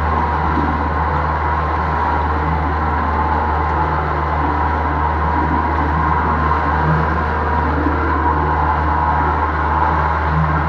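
A 75 hp outboard motor running steadily at cruising speed, the boat under way with its wake churning behind.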